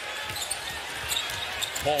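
A basketball being dribbled on a hardwood court under steady arena crowd noise.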